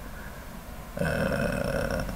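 A man's drawn-out hesitation sound, a held 'ehh' at one steady pitch, starting about halfway through and lasting about a second, after a short quiet pause.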